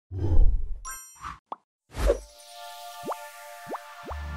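Logo-reveal sound effects: a low thump, a bright ding about a second in, a couple of small pops, then a second thump at about two seconds. A shimmering chime follows and holds to the end, crossed by quick rising swooshes near the end.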